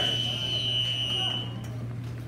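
Wrestling scoreboard buzzer sounding as the period clock runs out to zero: one steady high electronic tone that cuts off about one and a half seconds in.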